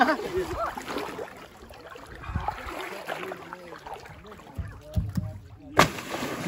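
Laughter, then quiet talk and water sloshing around a plastic sled in shallow lake water, ending in a sudden loud splash as a person jumps off the dock into the lake.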